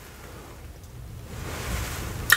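Bristles of a spoolie (mascara-wand) brush brushing over the microphone: a soft rustling hiss that grows louder through the second second.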